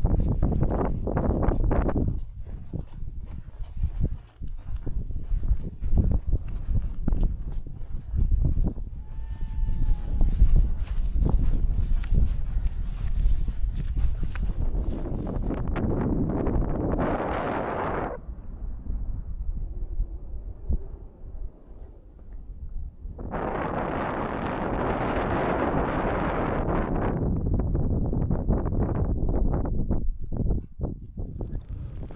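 Wind buffeting the microphone in gusts, a heavy rumble with two stronger gusts in the second half and scattered knocks, on exposed moorland.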